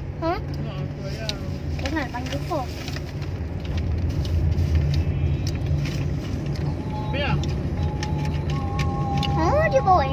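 Steady low rumble of a car's engine heard inside the cabin, running on under short children's voice sounds.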